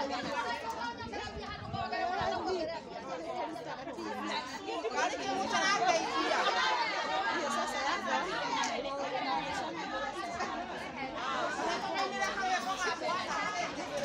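Several people talking at once: overlapping conversational chatter of a gathered crowd, no single voice standing out.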